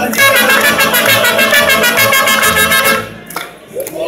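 A mariachi band plays an instrumental passage: trumpet and violins carry the melody over strummed guitars and a steady bass beat. The band stops about three seconds in, leaving a short lull.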